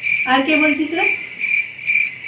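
Cricket chirping in a steady run of short, even high-pitched pulses, about three a second, with a woman's voice speaking briefly over it near the start.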